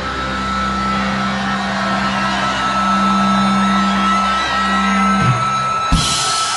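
Rock band's closing chord held and ringing out on distorted guitars and bass over crowd noise, with a steady high tone above it. The low notes cut off about five seconds in, leaving the crowd noise.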